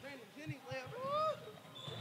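Quiet men's voices talking and laughing in a lull between louder speech.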